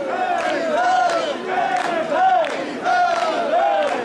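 A group of mikoshi carriers chanting a shouted call in unison as they shoulder a portable shrine, the short call repeating rapidly, about twice a second.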